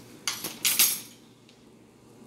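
Metal spoons clinking and scraping as dry ingredients are measured out: a few quick strokes in the first second, then quiet room tone.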